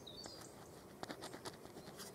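Ballpoint pen scratching faintly on a paper card as a cross is drawn, in a few short strokes from about a second in. A brief high bird chirp near the start.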